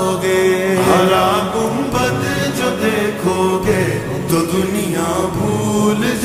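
A naat sung in Urdu, slowed down and drenched in reverb: the voice draws out long, gliding notes between the lines of the verse, over a chanted vocal backing.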